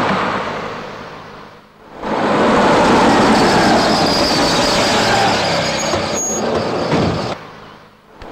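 A taxi van driving in and pulling up: steady engine and road noise that swells about two seconds in, holds for about five seconds, then fades out.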